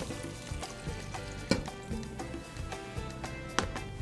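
Background music with sustained notes over faint sounds of vegetable broth being poured into a pot of sautéed onions and red peppers. There are two light knocks, about a second and a half in and near the end.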